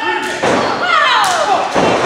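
Thuds of bodies hitting a pro-wrestling ring, a few sudden impacts with the loudest about half a second in and another near the end, under spectators shouting.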